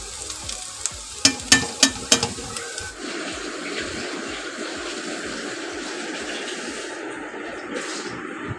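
Potato sticks frying in oil in a metal wok with a steady sizzle, and a few sharp clanks of a metal spatula against the pan between about one and two seconds in.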